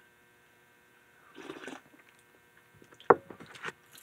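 A sip of hot energy drink slurped from a ceramic bowl, heard as a short slurp about a second and a half in, then a short sharp sound near three seconds and a few small mouth sounds. A faint steady electrical hum runs underneath.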